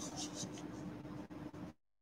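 Faint scratching of a pen tip on a paper sheet over a low room hiss and hum, then the sound cuts out completely to dead silence near the end.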